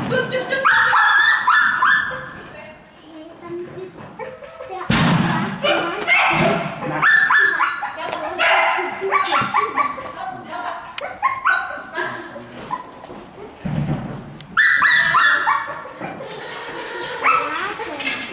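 A dog barking and yipping in repeated excited bursts while running an agility course, with short calls from its handler and a few knocks.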